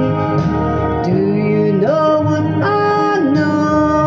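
A woman singing into a handheld microphone over recorded backing music, holding long notes that slide to new pitches.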